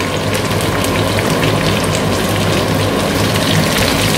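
Strips of roasted red pepper with onion and garlic sizzling in olive oil in a frying pan: a steady crackling hiss.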